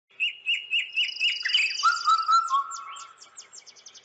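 Birdsong: clear chirps repeating about four times a second, overlapped by a high trill and a few lower whistled notes. It ends in a quickening series of short downward-sweeping notes that fades away.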